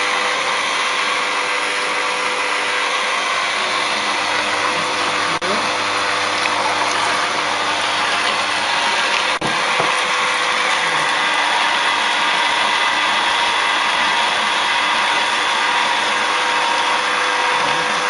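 Hurom slow juicer running steadily, its motor and auger whirring as it presses vegetables into juice.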